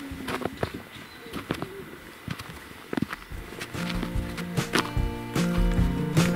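Footsteps in snow, a scatter of short crunches and clicks, then acoustic guitar music starts a little before four seconds in and grows louder.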